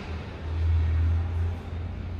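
A low rumble that swells about half a second in and eases off after a second and a half.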